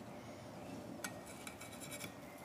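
Faint, quiet handling of a metal spatula against a ceramic plate while grilled halloumi slices are served, with one small clink about a second in.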